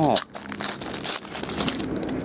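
Foil wrapper of a trading-card pack crinkling in the hands as the pack is opened, in quick irregular crackles.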